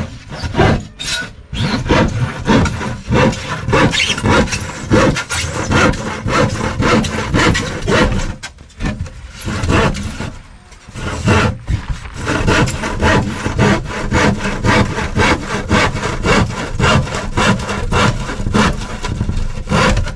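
A sharp handsaw cutting through a plywood sheet in steady back-and-forth strokes, about two a second, with brief pauses about eight and eleven seconds in.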